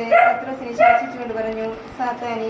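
A woman reading aloud from a prayer book in Malayalam, in a steady, nearly level-pitched recitation.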